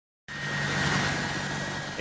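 Turbofan jet engines of a C-17 transport plane running on a runway: a steady noise with a fixed high whine and a low hum, starting suddenly after a brief silence.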